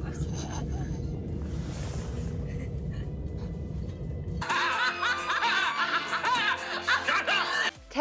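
Low, steady rumble of a moving train carriage with background music. About four and a half seconds in, it cuts abruptly to a burst of laughing voices that stops just before the end.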